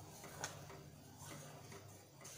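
A steel ladle stirring thick moong dal payasa in a steel pot, with a sharp tap of the ladle against the pot about half a second in and a few faint clicks. The stirring is kept up so the payasa doesn't stick to the bottom. A faint steady low hum runs underneath.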